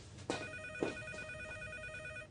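Office desk telephone ringing with an electronic warbling trill that starts about a third of a second in and runs on steadily. Two short knocks sound under the start of the ring.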